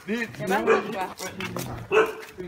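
A dog whining in short, repeated calls, with a louder call near the end.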